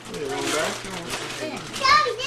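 Overlapping voices of children and adults talking, with a child's loud high-pitched call near the end, over a faint steady hum.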